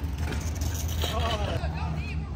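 Steady low rumble of city street traffic, with faint distant voices.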